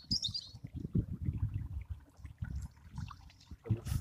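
A small motorboat moving slowly through water under an electric trolling motor, with a low, uneven rumble throughout. A bird chirps briefly near the start.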